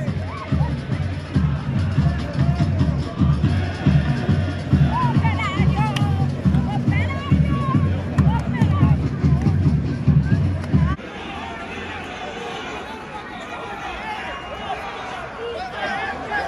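Music with a heavy, regular low beat over crowd voices; the beat cuts off sharply about eleven seconds in, leaving a quieter murmur of crowd and voices.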